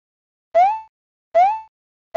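Two short synthesized 'bloop' sound effects, about a second in and again near the end. Each is a quick upward glide in pitch that settles on a brief held tone, the pop given to each 3D letter as it appears in an animated logo.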